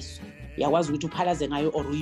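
A person's voice over background music with a regular low beat.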